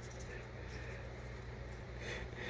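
Quiet, steady low hum with faint handling noise as a small cut plastic part is turned over in the hand.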